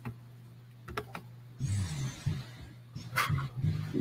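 A steady low electrical hum with a few faint clicks and knocks, and a muffled low-pitched sound in the second half.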